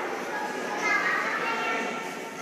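Indistinct chatter of many children and young people talking at once in a large room.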